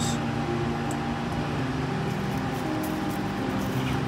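Steady low mechanical hum with a faint higher whine over a background hiss.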